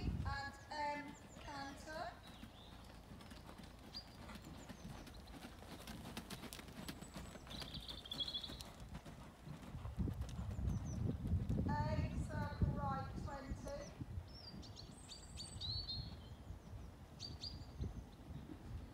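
Hoofbeats of a grey horse working on a soft rubber-chip arena surface: dull, irregular thuds, heaviest in the middle of the stretch.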